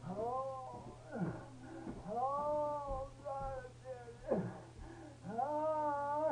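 A wounded man moaning and wailing in pain from a gunshot wound: about six drawn-out cries that each rise and fall in pitch, with short gaps between them.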